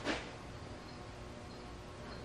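Quiet workshop room tone: a faint, steady background hum, with a brief soft hiss fading out right at the start.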